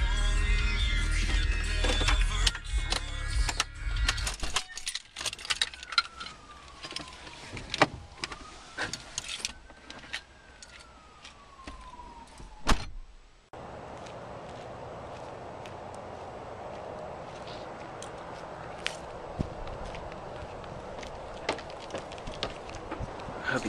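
A car's stereo music and engine run, then stop about four seconds in. Clicks and knocks follow from the car's interior and door, with a slow squeak that falls, rises and falls again, ending in a loud knock. The sound then changes suddenly to a steady hiss with a few light taps.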